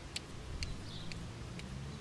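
Quiet outdoor ambience: a steady low rumble with light, sharp ticks about twice a second and faint chirps.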